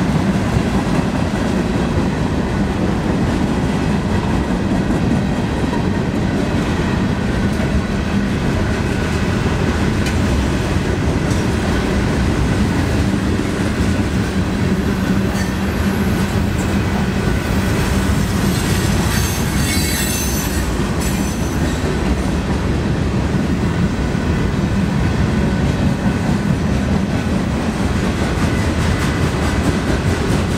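Freight cars of a passing train rolling over a grade crossing: a steady, loud rumble and clatter of wheels on rail, with a brief high wheel squeal about two-thirds of the way through.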